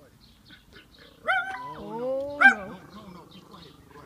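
Italian greyhound barking in high-pitched yips: a sharp one about a second in, a drawn-out gliding whine-like bark, and a loud sharp yip about two and a half seconds in.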